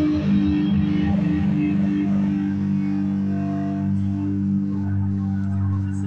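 Live electric guitar played through an amplifier, a low chord held and left ringing as a steady, slowly fading drone.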